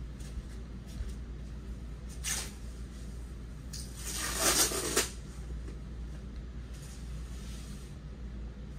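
A large loose canvas being handled: a short rustle about two seconds in, then a louder, longer rustle about four seconds in as the canvas and its tape are pulled off the wall, all over a steady low room hum.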